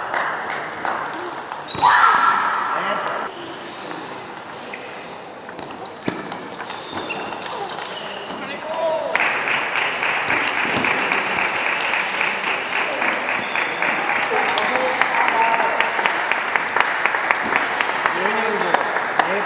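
Table tennis ball being struck by rubber bats and bouncing on the table in rallies, a run of short sharp clicks, over a hall's background of voices.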